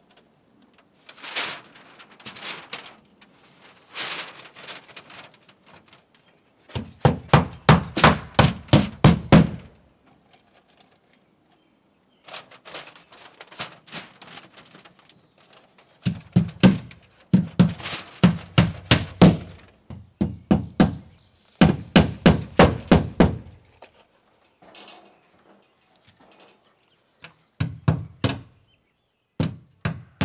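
Quick runs of hammer strikes fastening house wrap onto OSB sheathing, about three or four a second in several bursts, with softer rustling and scraping between them.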